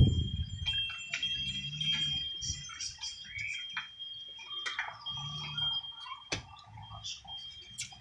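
A deck of tarot cards being shuffled by hand, with soft rustles and flicks of the cards and a sharp tap about six seconds in. A faint steady high-pitched tone runs beneath.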